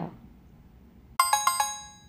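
A short chime sound effect: four quick bell-like notes a little over a second in, ringing out and fading, signalling that a quiz question comes up.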